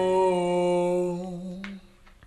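Slowed-down pop song: a held, wordless hummed vocal note that fades out in the second half, dropping to a brief near silence at the end.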